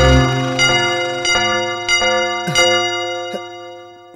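Background music of chiming, bell-like notes, a new strike about every half second over held ringing tones. A low bass drops out at the start, and the chimes fade away toward the end.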